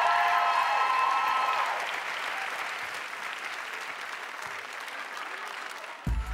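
Studio audience applauding, loudest at first and fading gradually, with cheering over it during the first two seconds.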